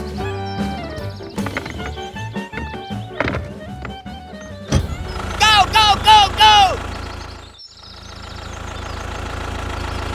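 Background music with a melody for about the first five seconds, then a steady low engine-like drone to the end, with four short rising-and-falling vocal calls over it near the middle.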